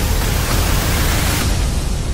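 Loud cinematic trailer sound design: a dense hissing noise swell over a deep low end, its hiss thinning out near the end.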